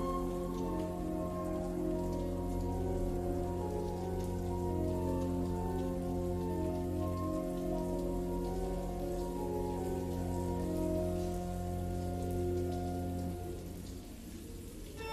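Rain falling, laid over slow sustained keyboard chords and a deep bass drone in a slowed, reverb-heavy song intro. The chords drop away near the end, leaving the rain and the low drone.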